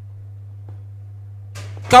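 Steady low electrical hum from the sound system, then a man's voice starts up near the end.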